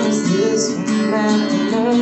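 Acoustic guitar strummed by hand, a steady run of chords.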